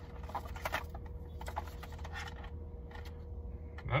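Scattered light clicks and plastic handling noises from a wired PC gaming mouse being turned over in the hands, over a low steady hum.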